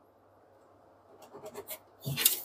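Faint scratching of a pencil marking a measurement on a wooden cabinet panel beside a tape measure, a few short strokes starting about halfway through after near silence.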